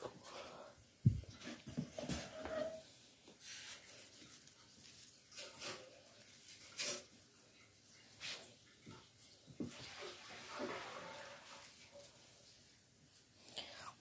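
Faint rustling and scraping of artificial Christmas tree branches being bent out and fluffed by hand, in irregular short bursts, with a sharp bump about a second in.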